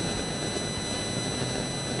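Steady outdoor street background noise, an even hiss and rumble with no distinct events.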